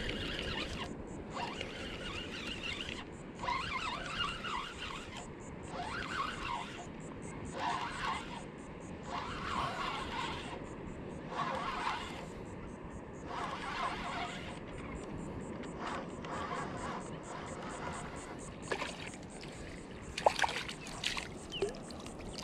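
Daiwa Saltist 4000 spinning reel being cranked in over a steady wash of wind and water, with short squeaky bursts every second or two. Splashes near the end as a small hooked sheepshead reaches the surface.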